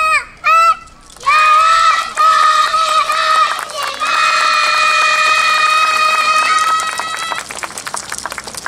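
Young girls' high voices through the stage PA, calling out a short chant and then holding one long call for about six seconds, as in a yosakoi team's shouted kakegoe. The call fades near the end into quick clicks.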